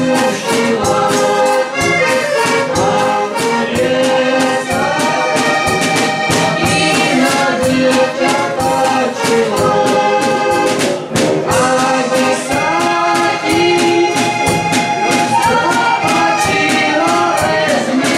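Heligonka (diatonic button accordion) playing a lively tune, its melody over deep bass notes, with a drum kit keeping a steady beat.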